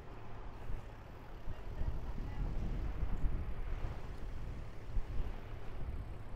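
Wind buffeting the microphone of a camera carried on a moving bicycle: a steady, gusting low rumble with a lighter hiss above it.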